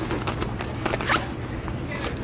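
A fabric backpack's zipper pulled open in a few short rasps, as a hand reaches into the pocket.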